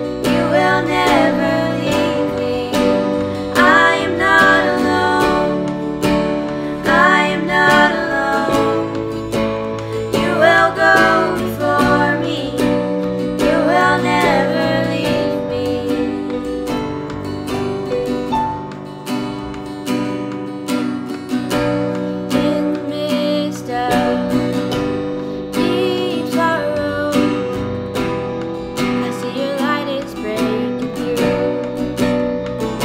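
Acoustic guitar strummed and an electronic keyboard playing piano chords, with two girls singing the melody over them; the singing is strongest in the first half and drops back after about fifteen seconds, leaving mostly the guitar and keys.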